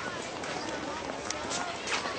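Indistinct background voices over a busy outdoor ambience, with a few scattered clicks.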